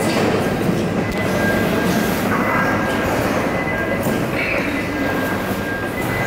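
Steady background noise of a large indoor fish-market hall: a continuous mechanical rumble with a faint steady high whine running through it.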